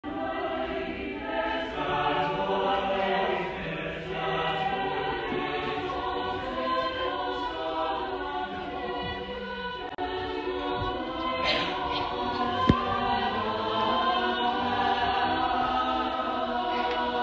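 Mixed-voice madrigal choir singing in parts, with a brief break between phrases about ten seconds in. A single sharp click sounds a few seconds later.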